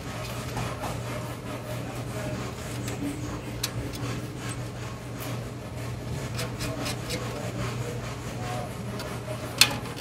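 Light metal clicks and rubbing as small nuts are threaded by hand back onto the rim brackets of a mandolin-banjo, with one sharper click near the end. A steady low hum runs underneath.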